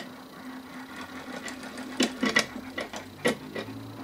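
Steel parts of a mechanical one-arm-bandit mechanism clicking and clinking as the clock arm is fitted onto the timer bar, a handful of sharp clicks mostly in the second half, over a steady low hum.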